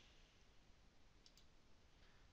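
Near silence with a faint computer mouse click, a quick double tick of press and release, a little past halfway.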